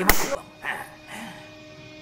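A single sharp hand clap at the very start.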